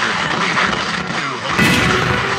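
Motor vehicle engine noise, its pitch falling through the middle, under a steady hiss, with a short loud hissing burst near the end.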